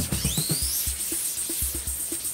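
Electronic background music with a steady, quick drum beat and a rising synth sweep in the first second.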